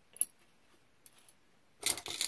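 Costume jewelry being handled: a single sharp click just after the start and a faint tick around the middle, then near the end a loud run of small metal pieces clinking and jangling together.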